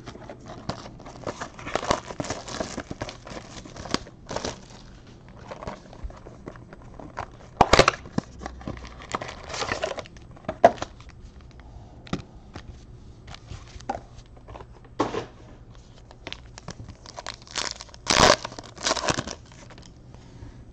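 Trading-card box packaging being opened by hand: the wrapper crinkles and tears in irregular bursts, with cardboard and cards being handled. The loudest bursts come about eight seconds in and again near the end.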